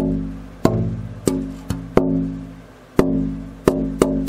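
Tap-testing the braced back of an unfinished twelve-string acoustic guitar body: seven taps, each followed by a low ringing tone that dies away over about a second. The back is really resonant.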